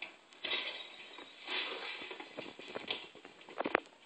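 Scattered rustling and handling noises, with a few sharp knocks about three and a half seconds in, heard as a film soundtrack through a television speaker.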